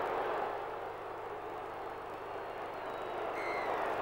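Steady noise of a large stadium crowd, dipping a little in the middle and swelling again towards the end.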